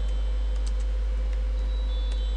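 Steady low hum with a faint steady tone above it, and a few faint laptop keyboard keystrokes.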